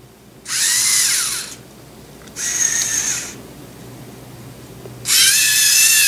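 LEGO Mindstorms EV3 GRIPP3R robot's servo motors and plastic gears whining in three bursts of about a second each, as it drives and works its gripper arms under infrared remote control. The pitch shifts in the first burst, and the last burst is the longest.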